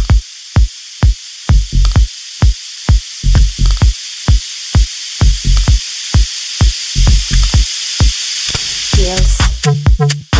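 Techno track: a steady four-on-the-floor kick drum at about two beats a second under a hissing noise sweep that builds and grows louder. Near the end the kick briefly drops out and a new pitched synth line comes in.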